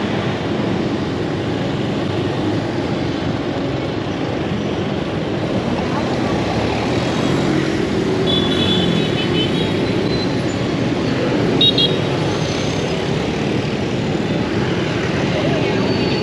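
Dense motorbike and scooter traffic running steadily at close range, with a truck among it. Short high horn toots sound about halfway through and again a little later.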